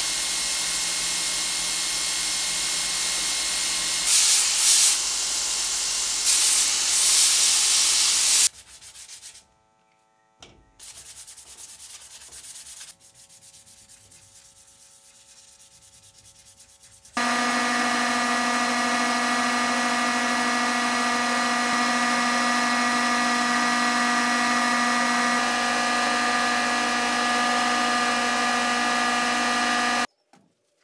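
Belt grinder running with the wooden sword handle pressed to the abrasive belt, the grinding swelling twice as the work is pushed harder, stopping about eight seconds in. A quieter stretch of sanding by hand follows, then a loud, steady, even noise with a hum that holds for the last half.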